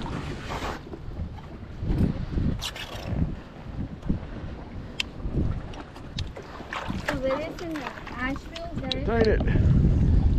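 Wind buffeting the microphone and water moving against the side of a boat, with a few sharp clicks and a voice speaking briefly near the end.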